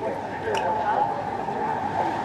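Sidewalk-café ambience: a murmur of other diners' overlapping voices with a car passing on the street, and a light click about half a second in.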